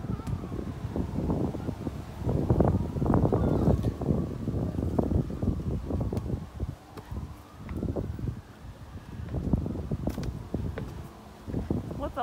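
Wind buffeting the microphone in uneven gusts, with a low rumble that rises and falls.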